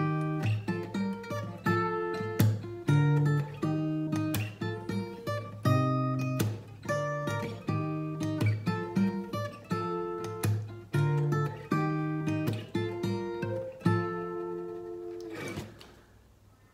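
Capoed acoustic guitar strummed through the song's pre-chorus chord progression, the chord changing every second or two. Near the end the last chord is left to ring out and fade.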